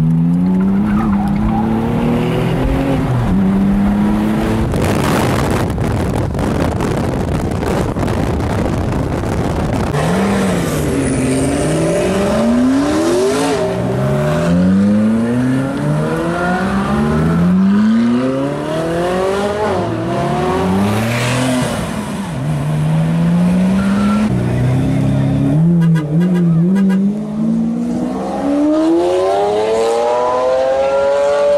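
Sports car engines revving hard under acceleration, the pitch climbing through each gear and dropping at each shift, over and over as cars pull away. A stretch of loud rushing noise comes early on, between the runs.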